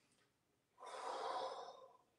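A single audible breath out, about a second long, starting a little under a second in.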